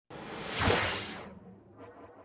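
A single whoosh sound effect of a title-logo reveal, swelling to a peak under a second in and dying away by about a second and a half.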